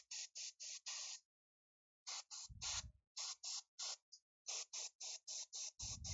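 Airbrush spraying black primer in short bursts of hiss, about four a second, with a pause of about a second near the start.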